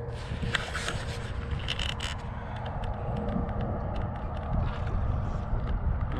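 Steady, uneven wind rumble on the microphone, with scattered light clicks and a brief scrape, most of them in the first two seconds.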